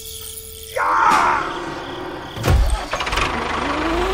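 Tractor engine sound, uneven rather than a steady idle, with a sudden loud burst about two and a half seconds in.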